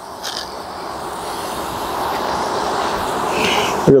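Beehive being opened by hand: a wooden hive lid lifted off and a frame pried out with a metal hive tool, giving two brief faint scrapes, one near the start and one near the end, over a steady noisy hum that grows slowly louder.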